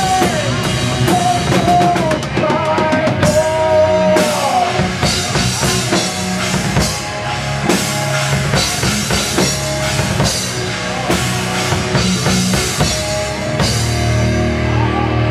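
Heavy metal band playing live: for the first few seconds a lead guitar bends notes over quick drum strokes, then the full band plays on with driving drums and cymbals.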